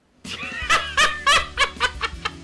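A man laughing hard: starting a moment in, a run of loud bursts of laughter that come quicker and weaker toward the end.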